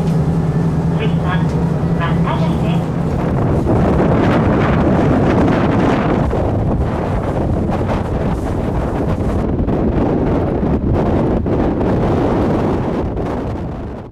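A diesel railcar's engine hum for the first second or two, then a loud, even rush of wind on the microphone, fading out at the end.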